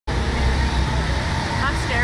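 A steady low rumble with hiss, and a voice speaking briefly near the end.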